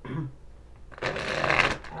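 A deck of oracle cards being shuffled by hand, a dense rustle lasting under a second about halfway through.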